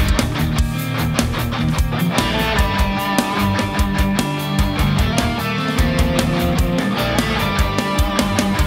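Heavily distorted electric guitar, an Ibanez tuned to D standard with a DiMarzio Tone Zone bridge pickup, playing a metalcore part over a backing track with fast, steady drums.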